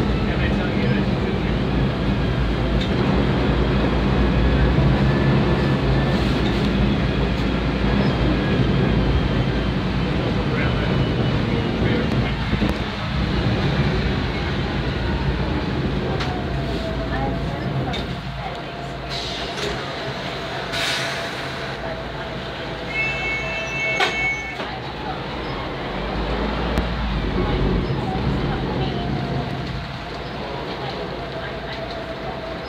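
Volvo B10M bus's mid-mounted straight-six diesel engine running loud under load, easing off about halfway through, then picking up again near the end. A brief hiss comes around two-thirds of the way in, followed by a short beeping tone and a click.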